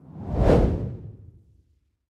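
Transition whoosh sound effect: a single swell of rushing noise that peaks about half a second in and dies away over the next second.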